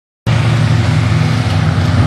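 Engines of a field of dirt-track modified race cars running steadily together, a low drone with a hiss over it that cuts in about a quarter second in.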